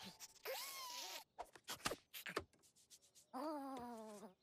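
A cartoon animal's cries: two short whiny calls with sliding pitch, one near the start and one near the end, with quick clicks and taps from sound effects between them.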